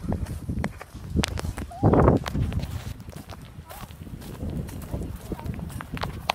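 Footsteps and handling knocks on a handheld camera microphone while the person filming moves across grass, a run of irregular thuds. About two seconds in there is a brief, loud vocal sound.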